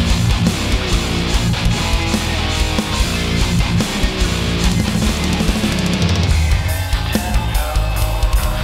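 Instrumental metalcore: electric guitars, bass and drums playing a heavy passage, with no vocals.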